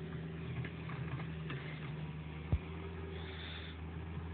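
Steady low hum of an excavator's diesel engine idling, with a single brief thump about two and a half seconds in.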